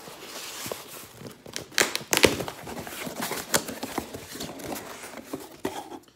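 Cardboard shipping box being opened by hand: flaps scraping and rustling, with irregular sharp knocks and crackles of the cardboard, the loudest a little after two seconds in.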